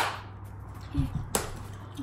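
Kitchen items being handled on a worktop: a sharp knock, a dull thump about a second in, then a second sharp knock.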